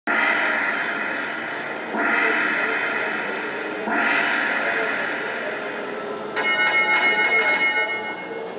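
Konami Legion Warrior slot machine sound effects during a free-games bonus trigger. A ringing tone swells and fades every two seconds as paylines are tallied. About six seconds in, a fast, pulsing jingle plays as the total of 64 free games is announced.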